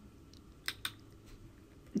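Two faint, quick clicks close together about a second in, over quiet room tone.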